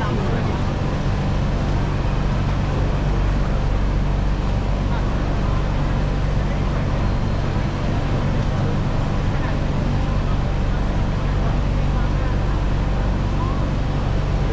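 Steady low hum of a BTS Skytrain car standing at a station with its doors open, with platform bustle and a few faint passing voices.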